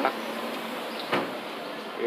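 Town street background noise with one sharp knock about a second in.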